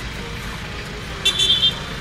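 Car cabin noise from a moving car: a steady low engine and road rumble. About a second and a quarter in there is a brief high-pitched tone lasting about half a second, the loudest sound here.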